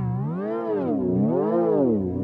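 An electronic logo jingle distorted by an editing effect, its held pitched notes warbling smoothly up and down about twice a second.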